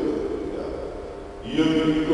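Liturgical chant: a man's voice trails off, then a sustained chanted line begins about one and a half seconds in.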